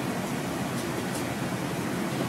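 Steady, even hiss of courtroom room tone and recording noise, with no distinct event.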